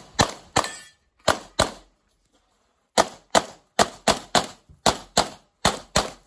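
Handgun shots fired rapidly, about thirteen in all, mostly in pairs a third of a second apart. There is a gap of about a second and a half after the first four shots, then the shots resume.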